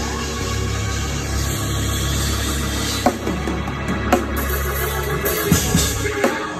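Live organ and drum kit: the organ holds a steady low bass chord while the drums play a few sharp hits with cymbal wash in the second half.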